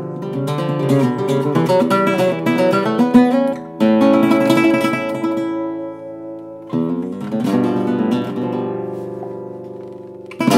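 Cutaway flamenco guitar played solo: a run of quick picked notes and strums, then two strummed chords about four and seven seconds in, each left to ring out and fade.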